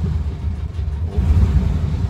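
Volkswagen Kombi engine that has just caught on the first try after a week standing, running with a deep low rumble. It swells louder for a moment about a second in.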